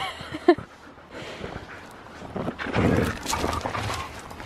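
Siberian huskies tugging and tussling over a large rubber horse ball with a handle, with dog sounds and scuffling on gravel, loudest about three seconds in.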